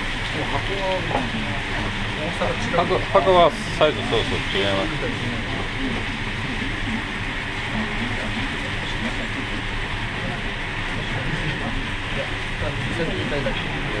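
Steady hiss of a busy gyoza kitchen, with gyoza frying in a pan behind the counter, under people talking in the background. The voices are loudest in the first few seconds.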